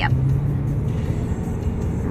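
Road noise inside a moving car's cabin at highway speed: a steady low rumble of tyres and engine, with a steady low hum.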